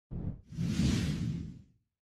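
Swoosh sound effects for an animated intro graphic: a brief whoosh, then a longer one about half a second in that fades away over about a second.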